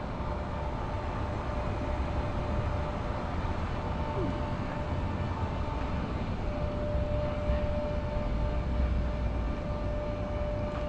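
A steady low rumble with a faint, unchanging hum on top, the kind of constant background noise of a town street.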